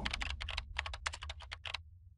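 Keyboard-typing sound effect: a quick run of about a dozen sharp clicks, roughly seven a second, that stops just before the end.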